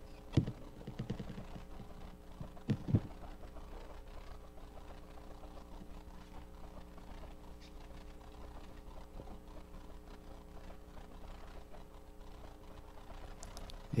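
Quiet room tone with a steady low hum, after a few knocks and thumps in the first three seconds, the loudest a quick pair of knocks just before three seconds.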